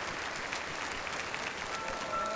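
Concert-hall audience applauding steadily in a standing ovation. Near the end, held musical tones begin to fade in under the clapping.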